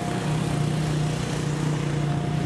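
Steady low hum of an idling engine, even in level throughout, with a faint steady higher tone above it.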